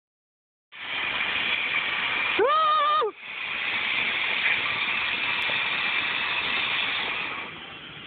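Firework fountain spraying sparks with a steady hiss that starts just under a second in and fades near the end. About two and a half seconds in it is broken by a short, high-pitched held yell, the loudest moment.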